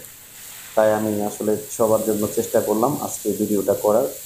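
A man speaks from about a second in. Under his voice is a steady hiss of water spraying from a garden hose onto a concrete tank floor.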